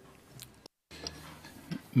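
Low room tone in a meeting hall with a few faint clicks, and a brief complete cut-out of the sound partway through.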